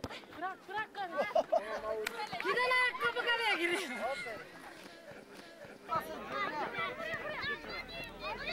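Several high-pitched voices of players shouting and calling out during a football game on grass, in bursts with a lull about five seconds in, and a sharp knock near the start.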